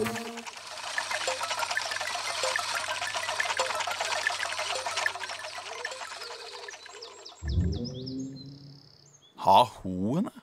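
Many birds chirping together in a dense chorus that fades out after about seven seconds. It gives way to a few low musical notes, then a sudden loud burst near the end.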